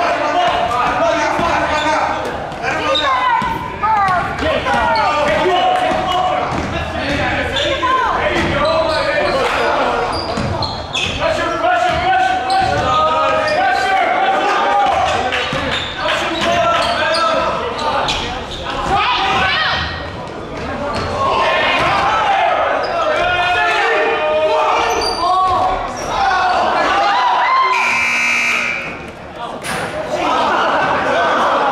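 A basketball bouncing on a hardwood gym floor amid players' and spectators' voices, echoing in the hall. About 28 s in, the scoreboard buzzer sounds for about a second as the clock runs out, ending the third quarter.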